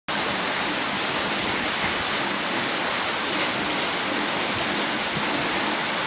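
Steady, even hiss of falling water, unchanging throughout.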